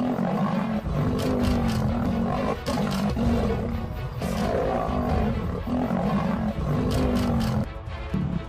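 Male lions fighting, with continuous snarling and roaring growls over background music. The sound drops away just before the end.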